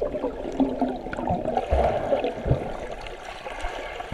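Muffled underwater churning and gurgling of pool water stirred by swimmers, heard with the microphone under the surface, with a couple of dull low thumps about halfway through.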